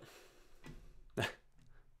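A single short, sharp bark, a little over a second in, over faint room tone.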